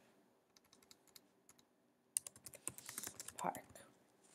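Computer keyboard being typed on: light key clicks, a few scattered ones at first, then a quicker run from about halfway through.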